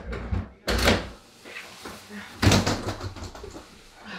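Hotel room door clunking twice as it is opened: two sharp knocks with a low thud, about a second in and again about two and a half seconds in.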